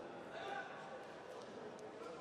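Faint ringside voices in a large hall, one calling out more loudly about half a second in, with a faint knock or two as the fighters close into a clinch.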